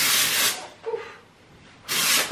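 Two short hisses of a Living Proof Perfect Hair Day aerosol dry shampoo can being sprayed into hair: one right at the start and one just before the end, each about half a second long.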